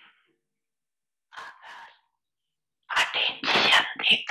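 A person's faint breath about halfway through, then a loud, noisy, breathy burst lasting about a second near the end, like a sneeze or a forceful exhale.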